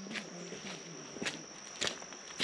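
Footsteps on a muddy dirt track strewn with wet leaves: a few separate steps. A steady high-pitched insect drone runs under them.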